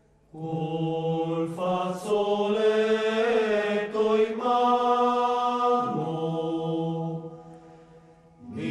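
A choir of low voices singing a slow phrase in long held chords, starting just after the beginning and fading away shortly before the end.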